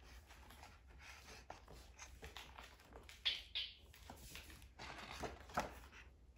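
Faint rustling and handling of a hardcover picture book's paper pages as a page is turned, with soft scattered taps and a couple of brighter swishes about three seconds in.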